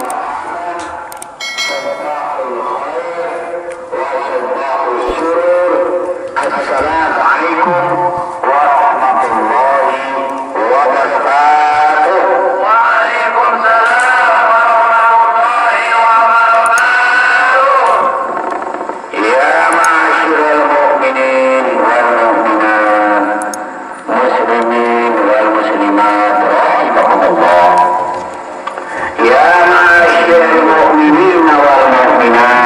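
A voice chanting the tarhim, the Ramadan pre-dawn call sung from the mosque, in long, ornamented melodic phrases with short breaks between them, through the mosque's loudspeaker.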